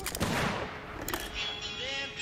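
Gunshots: a quick burst of several shots at the start and another shot about a second in. Then music with held notes comes in.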